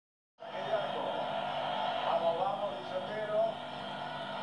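A football match broadcast playing from a television: a commentator's voice over a steady background of crowd noise.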